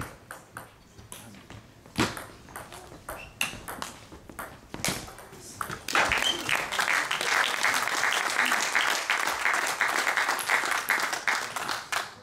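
Table tennis rally: the celluloid ball clicking off bats and table in an irregular run of sharp ticks for about six seconds. Then spectators applaud the point, a dense clatter of clapping that lasts to the end.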